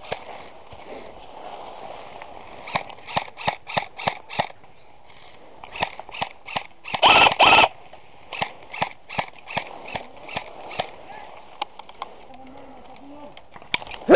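Airsoft rifles firing single shots as sharp pops, about three a second in a run a few seconds in, then more scattered shots later. A louder half-second burst comes near the middle.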